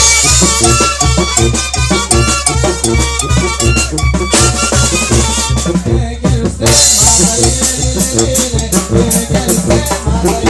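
Live tamborazo band playing at full volume: brass, including a large bass horn, over bass drum and snare on a steady beat. There is a short break about six seconds in before the band comes back in.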